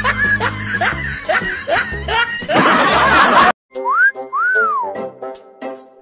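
Edited comedy soundtrack of music and sound effects. A bass beat carries a quick run of short rising squeaks, about two a second, that swells into a burst of noise and cuts off suddenly. After a moment of silence come two whistle-like slides, one rising and one arching up and down, over soft sustained tones.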